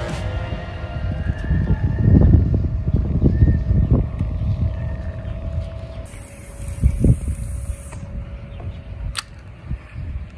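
Wind buffeting the microphone as a gusty low rumble, strongest about two to four seconds in, with a single sharp click near the end.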